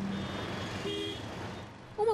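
Busy city street traffic: a steady wash of engine and road noise, with a short high tone about a second in.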